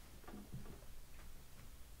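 A few faint ticks as moves are made in a fast online chess game, with a brief low murmur of a voice about half a second in.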